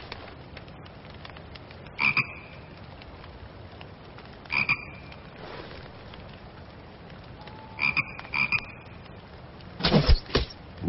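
A frog croaking four short times, spaced a few seconds apart with the last two in quick succession, over a steady background hiss.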